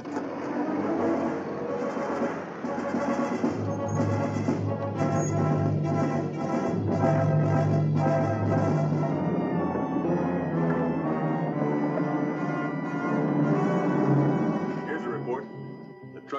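Orchestral film score: sustained brass notes over repeated drum strikes.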